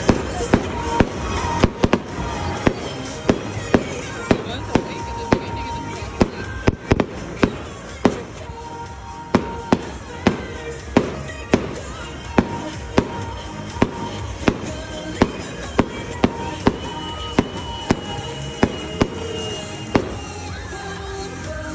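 Aerial fireworks shells bursting in a steady series of sharp bangs, more than one a second with a brief lull midway, over music playing throughout.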